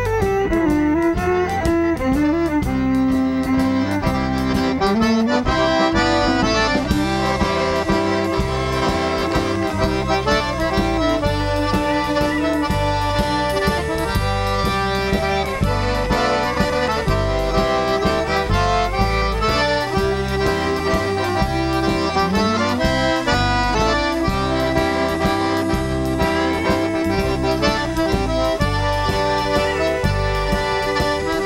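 Live Cajun band playing an instrumental passage: accordion and fiddle carry a sliding melody over bass and a steady drum beat, with no singing.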